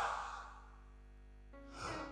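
A shouted, amplified voice dying away in room echo, then a near-silent pause with a faint held keyboard chord, and near the end a quick, loud breath into the microphone before speaking again.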